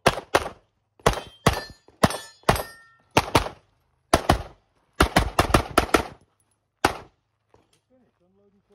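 Sig Sauer P320 XFive Legion pistol fired rapidly on a practical shooting stage: about fifteen shots in quick pairs and strings with short pauses between, the last about seven seconds in. One shot is followed by a brief ringing tone.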